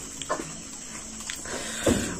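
Mouth sounds of a man eating by hand: a few short wet chewing and smacking noises, the loudest near the end.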